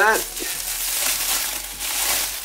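Cellophane sheet crinkling and crackling as it is crumpled and worked between the hands.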